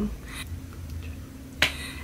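A single sharp click about three-quarters of the way through, over a low, steady hum.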